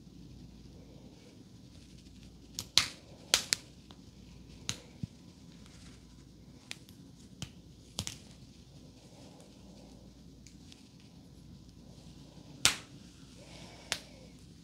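Close-miked hair handling as long, thick hair is gathered and twisted up at the crown: a soft rustle broken by sharp clicks and snaps, loudest about three seconds in and again near the end.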